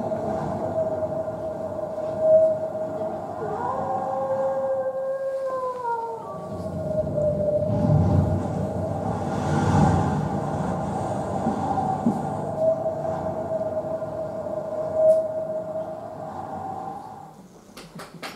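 Cartoon soundtrack played over loudspeakers in a hall, recorded from the room: one long held tone with a rumbling low part, and a short falling glide about four seconds in. It fades out near the end.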